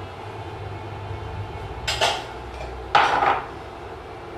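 Kitchenware clattering against a stainless steel pot twice, about two and three seconds in (the second louder), as sliced mushrooms are tipped from a glass bowl into cream sauce and stirred with a spatula. A low steady hum runs underneath.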